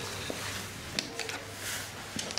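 Handling noise from a handheld camera moved over a red cotton top: soft fabric rustles and a few light clicks over a steady low hum, with one sharper click about a second in.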